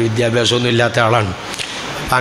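A man's voice intoning a prayer in long, level notes, stopping about a second and a half in.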